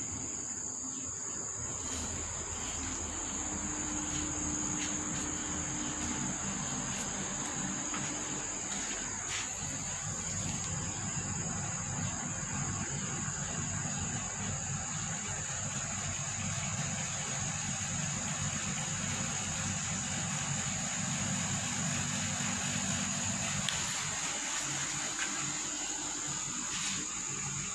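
Steady high-pitched chirring of insects, unbroken throughout, over a low steady rumble.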